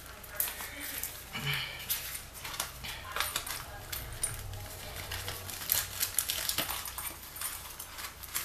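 Rummaging through a handbag for loose change: rustling, with frequent small clicks and clinks of coins.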